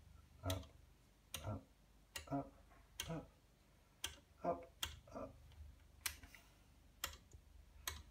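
An Elma 24-position stepped attenuator switch clicking through its detents one step at a time, about one click a second, as it is turned up.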